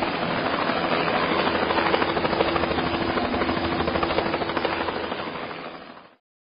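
Helicopter rotor sound effect: blades chopping in a rapid, steady beat over the engine noise, fading out over the last second.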